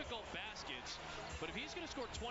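A basketball being dribbled on a hardwood court, a few bounces heard through the game broadcast, under faint commentator talk.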